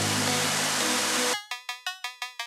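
Electronic intro sting: a sustained rushing swell over a low drone, which cuts off after about a second and a half and breaks into a rapid stutter of short repeated chords, about six or seven a second.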